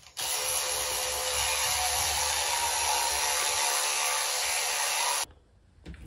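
Electric toothbrush running in the mouth during brushing: a steady buzz that switches on just after the start and cuts off suddenly about five seconds in.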